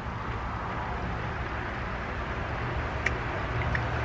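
Steady low outdoor background rumble, with two faint short clicks about three seconds in.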